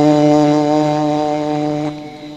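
A male Quran reciter's amplified voice holds one long, steady melodic note, the drawn-out close of a verse in tajwid recitation. It cuts off near the end, leaving a short echo.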